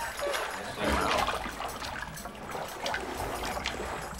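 Water splashing and trickling in a glass tank as a person dunks her face into it and lifts it out, water streaming off her face and hair.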